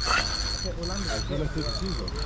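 Fishing reel's drag ratcheting in three short runs, about a second, then half a second, then half a second, as a hooked fish pulls line off.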